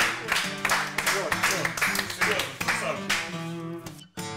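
Acoustic guitar being strummed in a steady rhythm, with voices over it.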